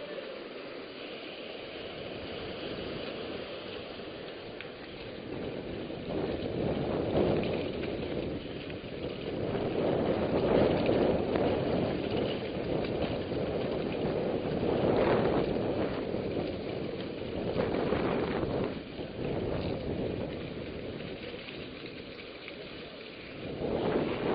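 Wind rushing over the microphone of a camera on a mountain bike ridden fast over a dirt trail, mixed with the tyres' rolling rumble. The noise swells and fades, with a few brief knocks from the bike about two-thirds of the way through.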